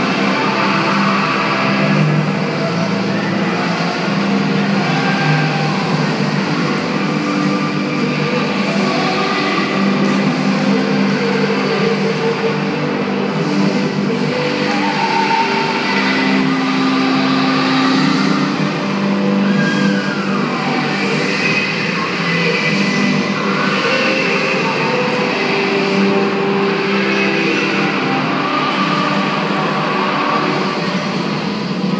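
Music playing in a large, echoing sports hall, over the continuous rolling rumble of a group of roller skates' wheels on the court floor.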